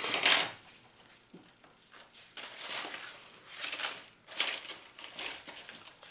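A few short, soft rustling and scraping noises, separate from one another, as crocheted fabric and yarn are handled and moved about on a cutting mat.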